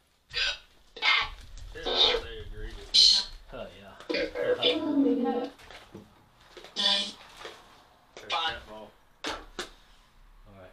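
A person's voice in short, indistinct bursts.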